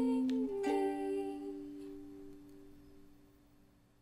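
A held note stops about half a second in, then a final ukulele chord is struck and left to ring, fading away to near silence as the song ends.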